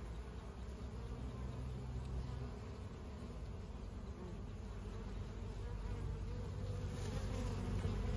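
Honeybees buzzing at a hive entrance, a steady low hum that grows a little louder near the end; Asian hornets are hunting at the hive.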